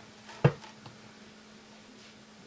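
A single sharp knock from handling about half a second in, followed by a faint tick.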